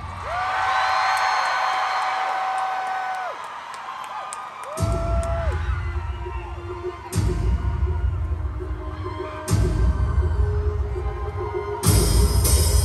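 Arena concert sound: a long, high held note over crowd noise for about three seconds, then, from about five seconds in, pop concert intro music over the PA with deep bass hits roughly every two and a half seconds.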